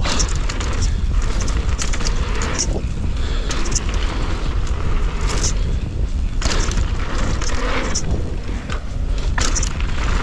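Wind buffeting the action camera's microphone as a downhill mountain bike is ridden fast on a dirt trail. Under the steady rumble, knobby tyres crunch over dirt and gravel and the bike rattles over the rough ground in frequent sharp clicks and knocks.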